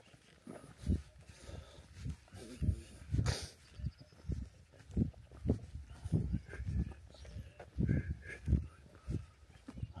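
Footsteps walking on a soft, muddy dirt track, about two dull thuds a second.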